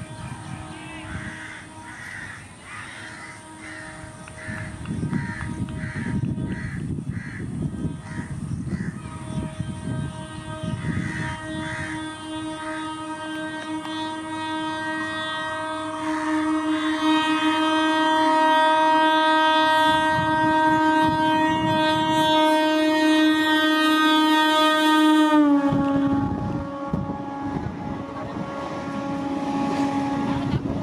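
Electric multiple unit (EMU) train sounding a long, held horn as it approaches at speed, over the rumble of its wheels on the track. The horn grows louder as the train nears, then drops suddenly in pitch as it passes, a little before the end. Crows caw repeatedly in the first third.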